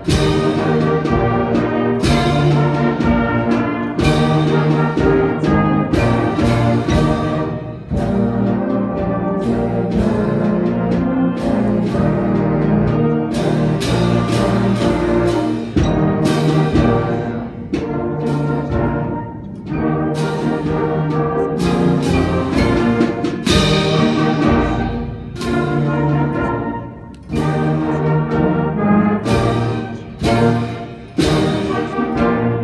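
Middle school concert band sight-reading a piece: brass and woodwinds playing full chords, with sharp accented attacks recurring through the music.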